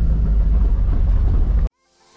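Low, steady rumble of a car heard from inside the cabin, which cuts off abruptly near the end.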